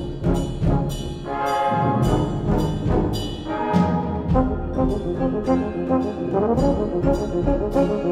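Brass band playing a loud, full passage, with sharp percussion accents about twice a second under the sustained brass chords.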